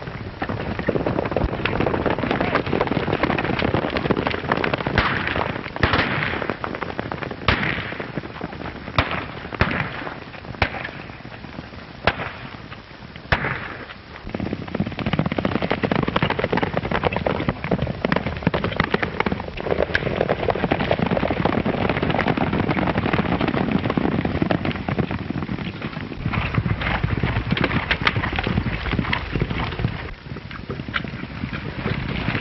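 Several horses galloping, a dense run of hoofbeats that drops away briefly about halfway through, heard through an old film soundtrack's crackle. About eight sharp cracks stand out over it in the first half.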